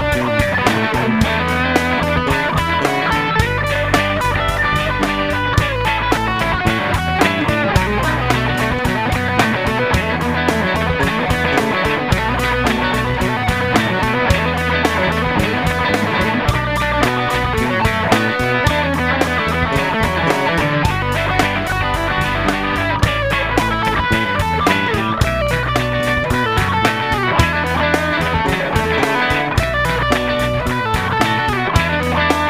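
Electric guitar played over a B minor bluesy rock backing track, with a steady drum beat and bass underneath.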